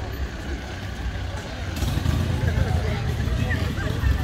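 Volkswagen Golf Mk7 driving slowly past at low revs, its engine and exhaust a low rumble that gets louder about halfway through as the car comes close. Crowd chatter goes on around it.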